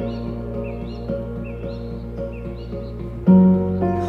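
Soft background music of held, sustained chords, with short bird chirps repeating over it; a new, louder low chord comes in near the end.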